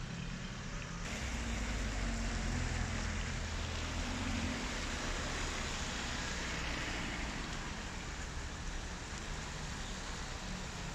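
Slow traffic on a wet street in the rain: a steady hiss of rain and tyres on wet asphalt over the low rumble of car engines. The engine rumble is heavier in the first few seconds.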